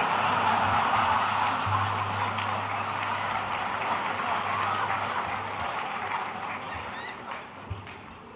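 A large audience laughing together. The laughter swells at once and then slowly dies away over several seconds.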